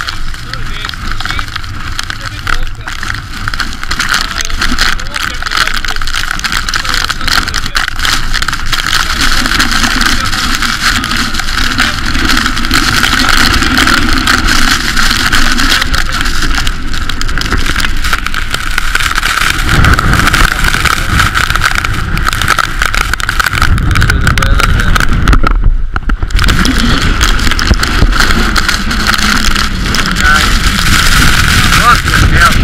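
Strong blizzard wind blasting across the camera microphone in a continuous noisy rush. The low buffeting gets much heavier about two-thirds of the way in, and there is a brief drop in the wind near the end.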